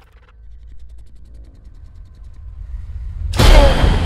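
A low, quiet rumble, then a sudden loud boom about three seconds in, with a falling tone and a long rumbling tail: a cinematic explosion effect for a volcanic eruption.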